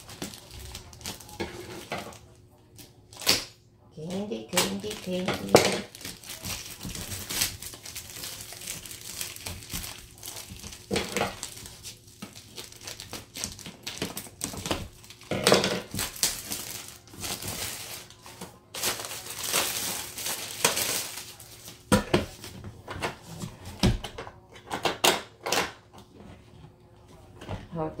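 Clear plastic wrapping crinkling and rustling in irregular bursts as it is cut with scissors and pulled off a plastic gumball machine, with a few sharp clicks of plastic parts knocking.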